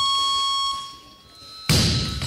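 Electronic buzzer of the referees' signal system sounding one steady tone for just under a second: the down signal telling the lifter she may lower the bar. Near the end there is a sudden heavy thud.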